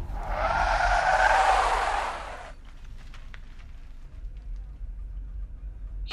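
Car tyres screeching in a skid for about two and a half seconds, cutting off suddenly, followed by a low steady rumble from the car.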